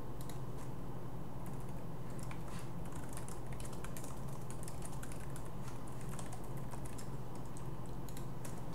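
Typing on a computer keyboard: irregular keystrokes, sparse at first and coming quicker after about two seconds, over a steady low hum.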